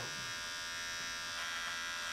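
Electric hair clippers running with a steady, high buzz as they cut a man's hair.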